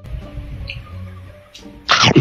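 A loud, short crunch of a bite into crispy fried chicken breading near the end, with a smaller crunch just before it, over steady background music.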